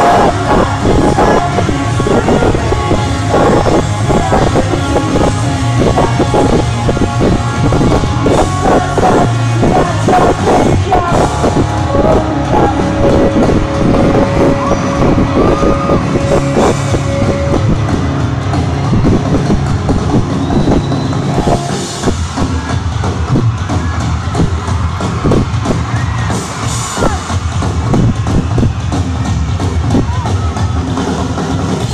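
Pop-rock band playing loudly live in an arena, drums driving under the music, with a long held note in the middle.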